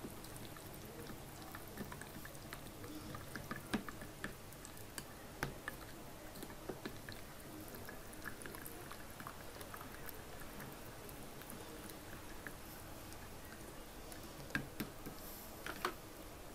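A plastic spoon stirring thick yogurt mixed with ground lentils in a glass bowl, with faint wet squelching and occasional light ticks.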